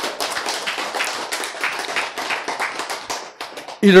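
Audience clapping, a dense run of many hands that dies away about three and a half seconds in.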